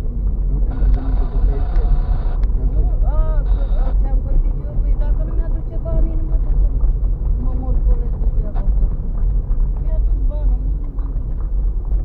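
Car driving on a rough unpaved gravel road, heard from inside the cabin: a steady low rumble of tyres and engine.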